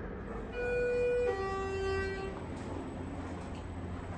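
Schindler HT elevator lantern chime sounding two falling tones, a higher one and then a lower one, each lasting under a second, to announce a car going down.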